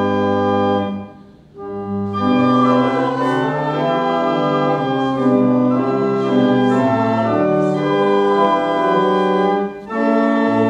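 Church organ playing a slow run of sustained chords with a moving bass line. The sound drops away briefly about a second in, then the next phrase begins; there is a second short break near the end.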